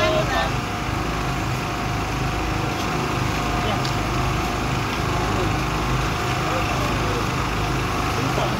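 A small engine running steadily, a low, even drone with a constant hum above it, with a few words of speech at the very start.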